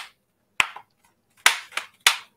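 Three sharp plastic clicks and knocks from a laptop's plastic case as it is handled with its bottom cover being fitted back on, one about half a second in and two close together near the end.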